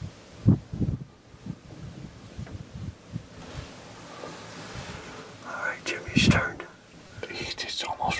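Hushed whispering between hunters, in short breathy bursts, with a few low thuds in the first second.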